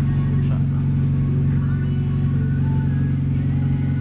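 Honda Civic's stroked B16 four-cylinder engine idling steadily, heard from inside the cabin.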